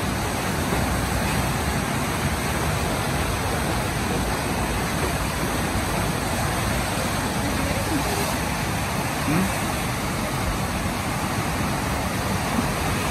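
Steady rushing of turbulent whitewater at a standing river wave.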